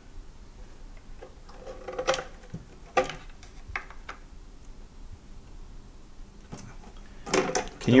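A few small clicks and taps from handling an old radio's cabinet while a control knob is pushed onto its shaft, the sharpest about two and three seconds in.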